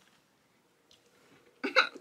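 Near silence: room tone with one faint click about a second in. A woman's voice starts near the end.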